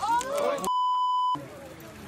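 A raised voice shouting, cut off about two-thirds of a second in by a steady high beep lasting about two-thirds of a second, with all other sound muted under it: a broadcast censor bleep covering an obscenity.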